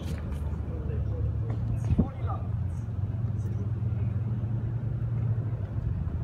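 A tennis ball struck by a racket, one sharp hit about two seconds in, over a steady low motor hum.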